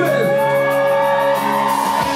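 Live band music with long held chords, a falling slide near the start and a change of chord just before the end.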